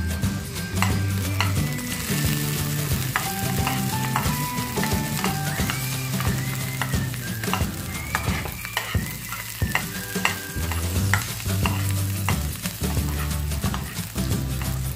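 Chopped onion and garlic sizzling in hot oil in a frying pan, stirred with a spatula that clicks and scrapes against the pan again and again. Background music plays underneath.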